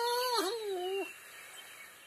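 A drawn-out, wavering whimper in a high voice from the recorded audio story, ending about a second in, followed by faint hiss.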